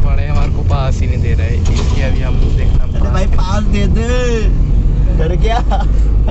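Car cabin noise while driving: a steady low engine and road rumble, with voices talking over it.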